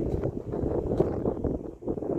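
Wind buffeting a phone's microphone outdoors: a steady, rough low rumble with a brief lull near the end.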